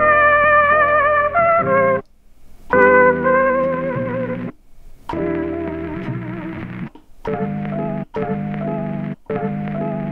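Sampled music chops played one after another from the pads of a Roland SP-404SX sampler: about six short melodic phrases, each cutting off abruptly, some with brief silences between them. The sample sounds muffled, with no top end.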